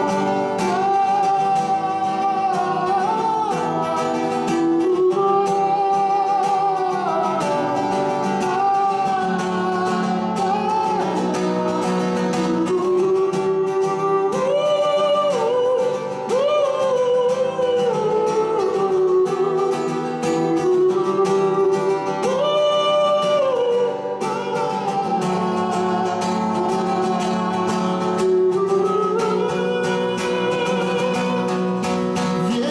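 A man sings live while strumming an acoustic guitar. The voice holds long notes and slides between pitches over the steady guitar.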